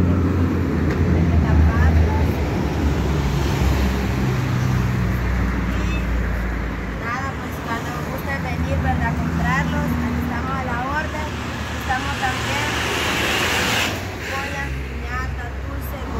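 Street traffic with a vehicle engine running steadily, under indistinct background voices. Near the end a louder hiss swells up and cuts off suddenly.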